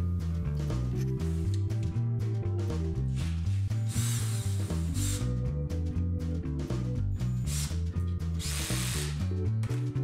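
Cordless drill running in two short bursts of about a second each, near the middle and again about a second before the end, tightening hose clamps around a glued stave cylinder; background music with a steady bass line plays throughout.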